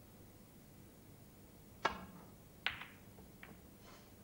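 A snooker shot: the cue tip strikes the cue ball with a sharp click about two seconds in, the cue ball clacks into a red under a second later, and two fainter clicks follow as the balls knock on.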